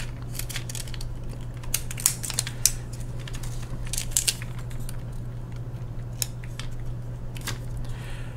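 Scattered small clicks and rustles of a 35mm film leader being handled and threaded into the take-up spool of an SLR with its back open, over a steady low hum.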